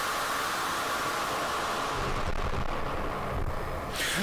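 Steady, noisy hiss with a bright band of distortion in the upper-middle range and no drums or voice; a low rumble comes in about halfway through.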